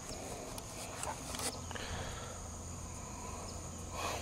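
Faint outdoor ambience: a steady high-pitched insect drone, with a few soft rustles and clicks from the camera being handled while its fogged lens is wiped.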